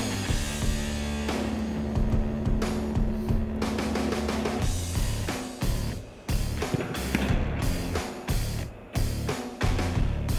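Background music with drums and a beat, turning choppy and stop-start in the second half.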